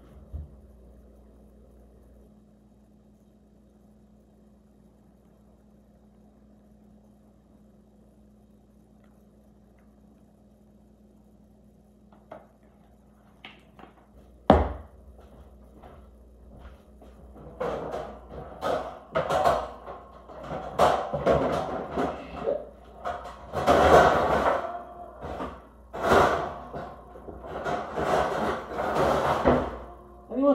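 One sharp thump about halfway through. Then, in the second half, continuous irregular clanking of metal baking pans and trays being rummaged through, some strikes ringing.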